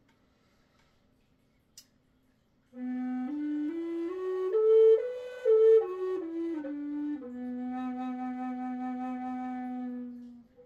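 Poplar bass B Native American style flute, starting about three seconds in. It plays up the scale note by note and back down, then holds its low B bottom note steadily for about three seconds.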